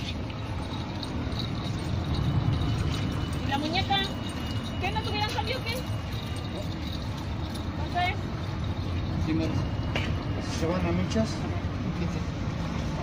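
Street background with a steady low rumble of traffic, a few short wavering chirp-like calls and faint voices.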